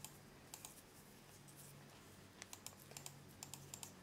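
Faint, irregular clicking of a computer keyboard and mouse being worked to play a video game, the clicks coming in short loose clusters over a faint low room hum.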